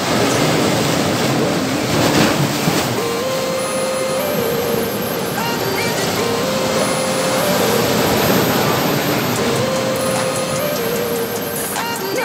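Sea waves surging and breaking over rocks, a steady rush of surf. From about three seconds in, a quiet melody of background music plays over it.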